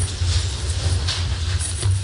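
Steady low rumble with a constant hiss over it, and a few faint knocks.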